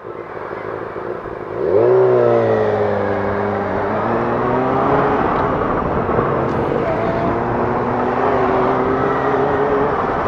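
Yamaha FZ6 Fazer 600 inline-four motorcycle engine pulling away from a standstill. The revs rise sharply about two seconds in, then settle into a steady note, with a gear change about halfway. Wind noise on the helmet microphone builds as speed picks up.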